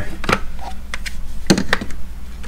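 Hard plastic DeWalt compact battery packs being handled and set into a metal tool chest drawer among other packs: a few light clicks and knocks, the loudest about one and a half seconds in.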